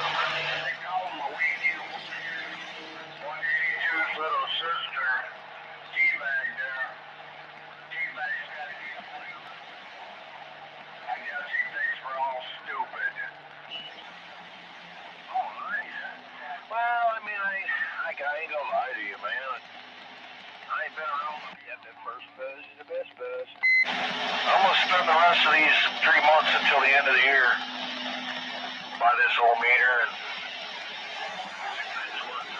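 CB radio voice traffic heard through a Ranger 2995 base station's speaker on channel 17 AM: stations talking in turn, with steady whistling tones beneath the voices. A louder, stronger station comes in near the end.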